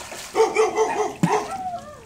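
A dog yapping in a quick run of high yips, then a short falling whine near the end.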